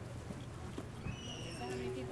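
Shoes stepping on asphalt as people walk close past, over a steady low hum, with faint voices in the background and a short high tone about a second in.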